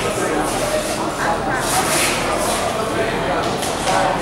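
Indistinct chatter of spectators in an indoor hall, several voices talking over one another at a steady level.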